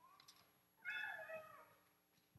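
A faint, short high-pitched cry that falls in pitch, lasting a little under a second, about a second in.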